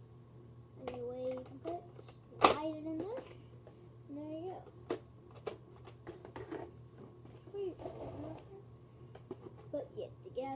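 Plastic clicks and clatter from a Nerf blaster being handled, with one sharp click about two and a half seconds in as the loudest sound. A child's voice mumbles on and off between the clicks.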